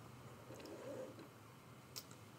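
Near silence: room tone, with a faint soft sound about half a second in and a single short click near the end.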